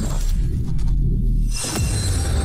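Cinematic logo-reveal sound design: a deep, steady bass rumble, then near the end a quick falling sweep into a sudden bright, crash-like hit that rings on.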